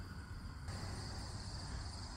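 Faint outdoor ambience: a low steady rumble under a thin, steady high drone of insects. The texture shifts slightly about two-thirds of a second in.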